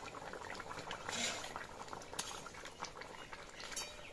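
Thick curry gravy bubbling at a boil in a wok, with a metal spatula clinking and scraping against the pan as it is stirred. There is a brief louder hiss about a second in.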